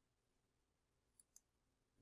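Near silence, with one faint mouse click a little past halfway.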